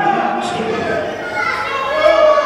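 High-pitched voices shouting and yelling in a large hall, echoing.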